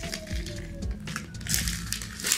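Paper wrapper crinkling while someone bites into and chews a wrapped sandwich, with a few soft thumps and a rustle of paper about one and a half seconds in. Background music with held tones plays under it.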